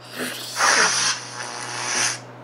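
A girl laughing in a breathy, unvoiced way, airy and hissing, growing louder about half a second in and stopping just at the end.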